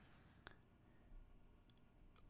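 Near silence: room tone, with a single faint, sharp click about half a second in and a few fainter ticks near the end.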